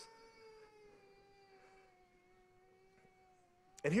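A faint, steady held tone with overtones, sinking slightly in pitch, cut off by speech near the end.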